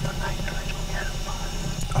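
A man speaking softly, barely above a whisper, over a steady low hum.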